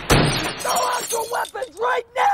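A loud crash of shattering glass right at the start, followed by a man's strained, wordless cries.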